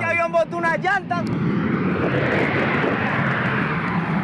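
Jet engine noise from a Boeing 727 cargo plane passing very low overhead on its takeoff run, a loud rush that builds about a second in and then holds steady.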